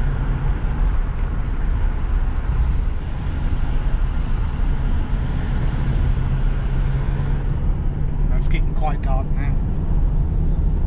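Steady engine drone and road noise inside a Ford Transit van's cab while driving; the higher hiss thins about three quarters of the way through.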